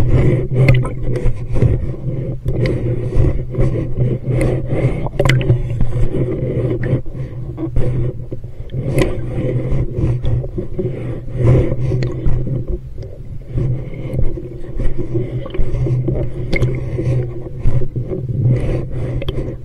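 Scuba diver's breathing underwater, muffled through the camera housing: regulator breaths and exhaled bubbles rumbling in a slow cycle about every three to four seconds, with scattered clicks and scrapes throughout.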